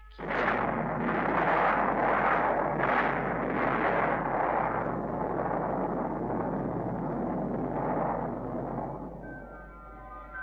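Film sound effect of a tree bursting into flame: a sudden loud rush of rumbling noise that surges several times in the first few seconds, then eases and fades away near the end.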